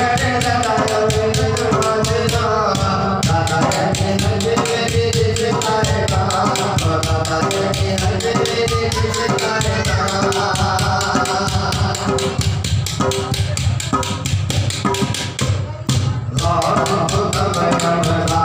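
A man singing a devotional Sufi kalam into a microphone, over a fast, steady rhythm of hand percussion beaten on a wooden table. Near the end, the rhythm and voice break off briefly.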